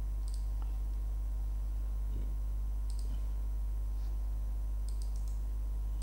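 A few faint computer mouse clicks, scattered and some in quick pairs, over a steady low hum.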